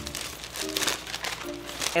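Brown paper takeout bag rustling and crinkling in irregular bursts as it is opened by hand, with background music playing steadily underneath.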